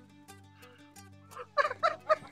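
Soft background music with low held tones; about one and a half seconds in, a man breaks into a quick run of short, loud laughs.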